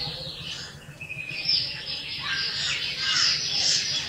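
Small birds chirping, many short high calls overlapping without a break.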